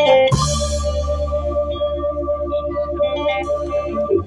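Live band ending a song: a final chord struck with a cymbal crash about a third of a second in, then held on keyboard, guitar and bass. A tone pulses about four times a second under it, and the chord is cut off near the end.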